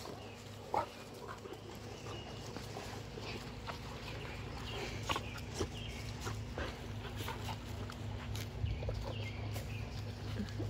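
Cane Corso dogs moving about close by: scattered small scuffs and short dog noises, with one sharper sound just under a second in, over a steady low hum.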